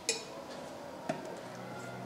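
Metal lid of a tin can being pressed and settled onto the can: a sharp metallic click just after the start, then a lighter tick about a second later.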